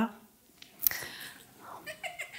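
A sharp click a little under a second in, then faint, scattered soft chuckles from an audience.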